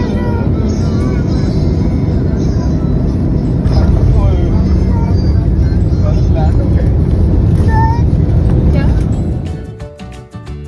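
Jet airliner heard from inside the cabin as it rolls down the runway: a loud, steady rumble of engines and wheels that grows louder about four seconds in. It fades out near the end.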